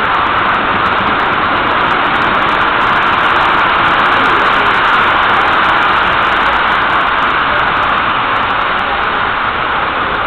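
Model trains running on a display layout's track, a steady rolling rumble and whir that swells slightly near the middle.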